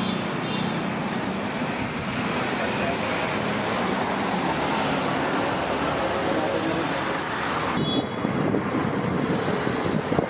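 Steady road traffic noise with indistinct voices in the background; the sound changes abruptly about eight seconds in.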